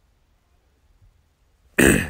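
Near silence, then a short, loud throat sound from a man near the end.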